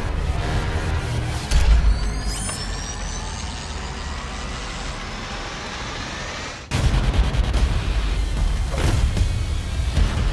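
Trailer score and sound design: a deep boom a second and a half in, gliding tones over a steady low bed, then a sudden cut about two-thirds of the way through into louder, pulsing low percussion with sharp hits.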